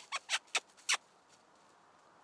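A person making short kissing squeaks with the lips to call dogs, about four quick ones in the first second.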